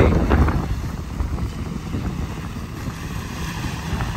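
Wind noise on the microphone over the wash of small waves breaking at the shore, heaviest in the first half second.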